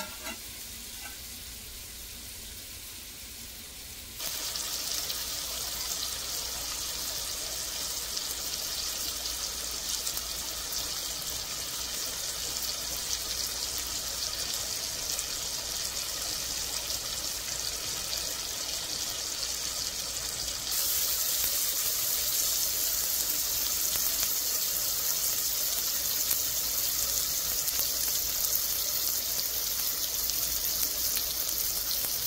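Chopped onion, scallion and tomato sizzling steadily in hot oil in a pot. The sizzle is faint at first, grows louder about four seconds in, and louder again about twenty seconds in.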